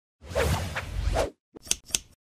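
Logo intro sound effect: a whoosh lasting about a second, then two quick, sharp scissor-like snips near the end.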